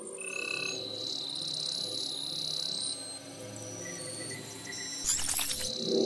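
Electronic TV channel bumper music: a soft low bed under a steady high tone and scattered high chirping sound effects, with a brief bright shimmering burst about five seconds in as the graphic changes.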